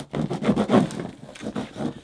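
Packing tape on a cardboard box being slit and torn open with a small plastic Glock-shaped keychain, an irregular run of scraping and ripping strokes with cardboard rustling.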